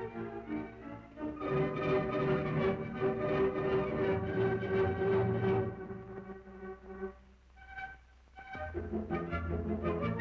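Orchestral silent-film score with strings and brass: a long held note over the first half, thinning to a quiet passage about seven seconds in, then fuller, lower music coming back in near the end.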